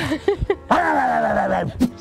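A person's voice: a few brief vocal sounds and a low thump, then one drawn-out vocal sound about a second long that falls slightly in pitch.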